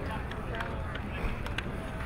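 Outdoor sports-field ambience: indistinct distant voices over a steady low rumble, with a few faint short clicks.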